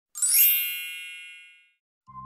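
A single bright chime sound effect for an intro, opening with a quick upward sweep and then ringing out, fading away over about a second and a half.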